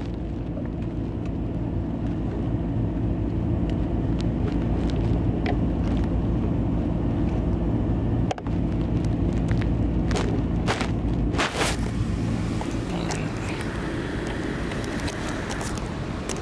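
Car engine running, heard as a steady low hum, with the camera being handled: rubbing against fabric and a few sharp clicks about two-thirds of the way in.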